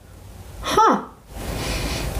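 A woman's short wordless vocal sound falling in pitch about halfway in, then a breathy exhale.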